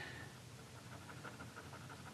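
Glitter gel pen scratching quickly back and forth on paper as a small area is coloured in, a faint, fast, even rhythm of strokes.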